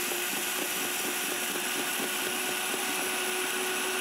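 DASH Chef Series 1400-watt blender running on high at a steady pitch, milling dry white rice into flour, with a dense hiss from the grain being pulverised.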